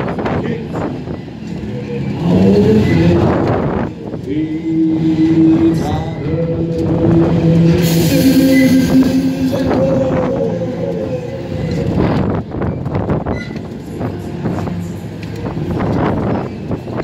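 Wind rushing over the microphone and the rumble of a Flipper fairground ride car as it swings and spins. Long held tones, some gliding, sound over it between about 2 and 11 seconds in.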